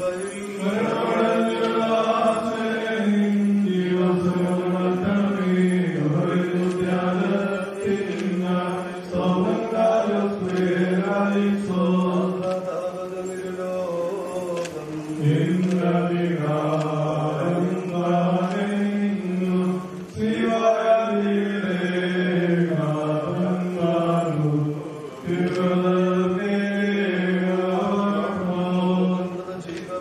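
A man's voice chanting a liturgical funeral prayer in one continuous melodic line, with short pauses for breath about two-thirds of the way in and again a few seconds later.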